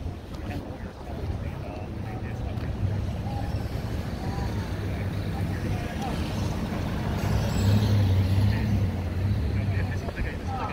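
Low rumble of a vehicle engine on the road, building louder near the end, under faint distant voices of a crowd.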